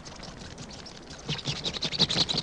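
Rapid, ratchet-like clicking and chattering from a film soundtrack: the creature sound of attacking flying piranhas. It grows louder and denser a little past halfway.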